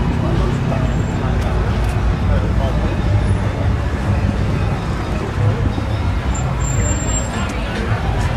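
Busy street sound: a steady low rumble of vehicle engines and traffic, with people's voices and chatter mixed in.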